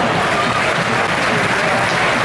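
Football stadium crowd applauding, with many voices mixed in.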